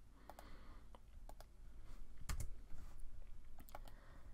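Faint clicking of a computer mouse and keyboard: about a dozen short, sharp clicks, several in quick pairs.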